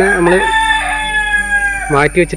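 A rooster crowing: one long call that drops in pitch near the end.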